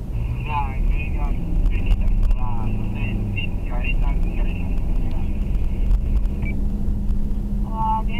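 Steady engine and road noise inside a moving car's cabin, with indistinct speech over it.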